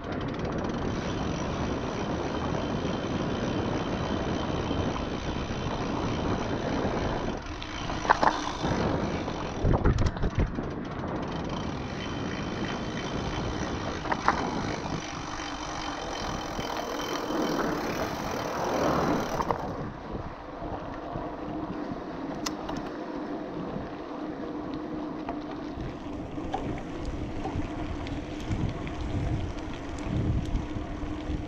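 Wind rushing over the action camera's microphone together with the tyre noise of a mountain bike rolling fast on a paved road, with a few short sharp knocks in the first half from bumps in the road.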